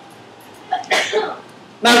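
A man coughs once, briefly, about a second in; his speech resumes near the end.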